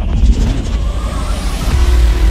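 Loud opening theme music for a TV programme, with a heavy bass rumble and a rising whoosh effect sweeping up through the middle.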